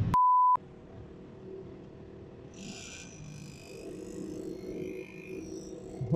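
A single short, pure, high beep just after the start, with the rest of the sound muted around it: a censor bleep dubbed over the recording. It is followed by faint, steady background noise.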